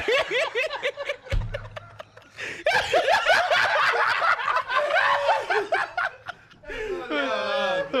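A group of men laughing hard together in waves. The first burst fades a second or so in, then breaks out again louder from about three seconds in.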